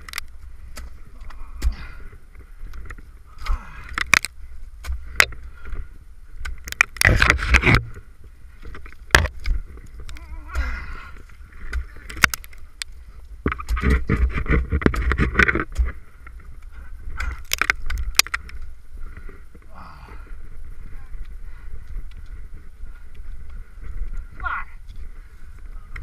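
Ice axes and crampons striking soft wet ice during a climb: sharp single hits spaced a second to several seconds apart, with a longer stretch of crunching and scraping about halfway through.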